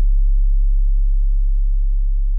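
A loud, steady, very deep synthesized bass note held as the last note of a Brazilian funk track. A fainter higher tone dies away in the first half second.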